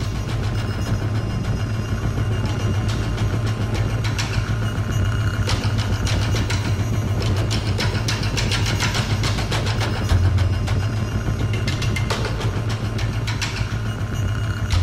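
A steady low engine rumble with busy street noise and scattered clatter, over faint music.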